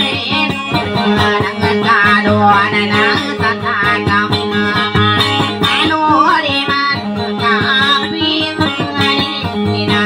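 Acoustic guitar plucked in Maranao dayunday style, a melody over a steady low drone note, with a voice singing wavering, ornamented lines over it.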